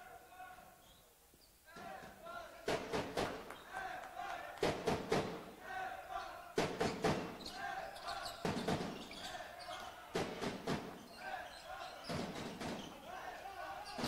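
A handball bouncing on a wooden sports-hall floor, with echoing thuds mostly in pairs about every two seconds, starting about two seconds in. Faint players' voices sound between them.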